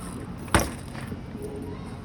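Steady low outdoor rumble, with one sharp knock about half a second in.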